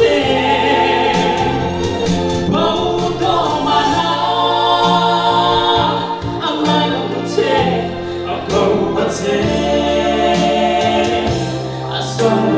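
A man singing a slow song solo into a handheld microphone, amplified, with long held notes. Instrumental accompaniment with a sustained bass line runs under the voice.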